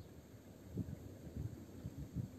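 Faint, uneven low rumble of wind buffeting the microphone, with a few soft low thumps.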